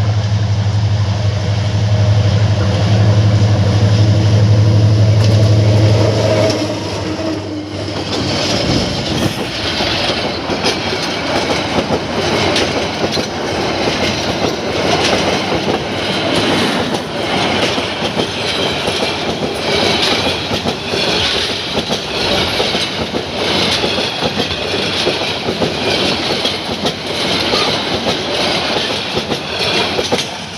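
Diesel-hauled Bangladesh Railway intercity express train passing at speed. A loud, steady low engine drone comes first and drops away about seven seconds in as the locomotive goes by. After that come the rumble and rhythmic clickety-clack of the coaches' wheels over the rail joints, with high-pitched wheel noise.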